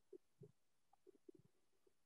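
Near silence, with a few faint, brief low blips.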